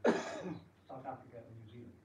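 A person clearing their throat: one sudden, loud, harsh burst about half a second long, followed by a few quieter short vocal sounds.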